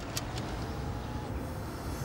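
Steady low rumble of a car in motion heard from inside the cabin, with a few light clicks near the start.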